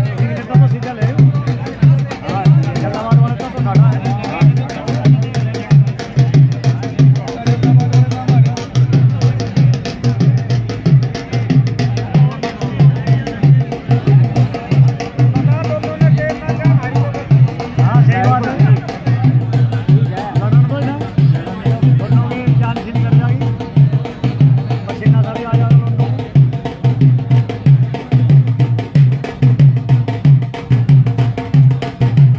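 Dhol drum beaten in a steady, even rhythm, with onlookers' voices faintly underneath.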